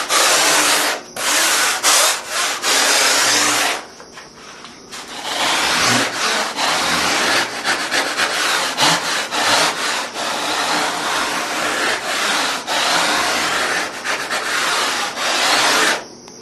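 Surform rasp shaving the edge of a rigid polyurethane foam surfboard blank in repeated scraping strokes, trimming the outline to width, with a short pause about four seconds in.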